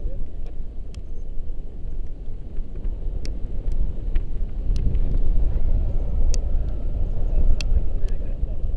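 Wind buffeting a camera microphone in paraglider flight: a loud, steady low rumble with a handful of sharp ticks scattered through it.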